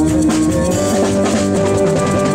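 Live band music: drums and percussion keeping a steady beat under sustained guitar and keyboard notes.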